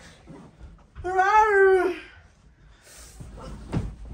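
A woman's long wordless exclamation, held for about a second on one pitch and dropping at the end. Near the end comes a soft thud as she flops onto a bed.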